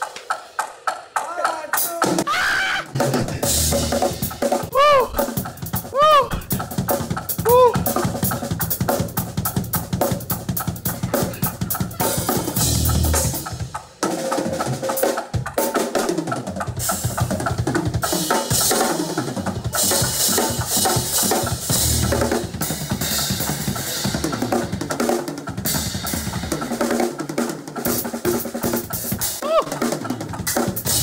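A drum shed: two drum kits played at once, with rapid snare and bass-drum fills and a keyboard behind. Cymbal crashes grow thick from about halfway through, after a brief break.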